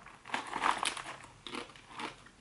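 Crunching and chewing of a crisp pressed-vegetable tortilla-style chip, a run of irregular crackles that dies away after about a second and a half.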